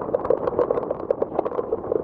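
Heavy rain with wind buffeting the phone's microphone: an uneven rushing noise broken by many quick, irregular knocks.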